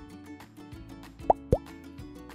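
Soft background music with two quick cartoon plop sound effects, each a short blip rising in pitch, about a quarter second apart and roughly a second and a half in.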